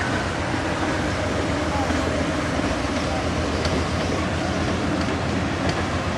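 Amtrak Superliner passenger cars of the California Zephyr rolling past at low speed: a steady rumble of wheels on rail with a few faint clicks.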